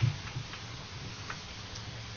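A low thump on the podium microphone, then a steady low hum with a couple of faint clicks as papers are handled at the lectern.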